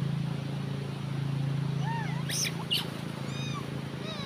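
Wild long-tailed macaques calling: short high squeaks and arched chirps come in from about halfway through, over a steady low hum.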